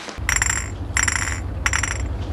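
Glass bottles clinked together in a slow, even rhythm, three ringing clinks about two-thirds of a second apart, over a low steady hum.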